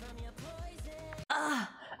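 A pop song with a steady bass and a sung melody stops abruptly just over a second in. It is followed by a loud sigh from a person, falling in pitch.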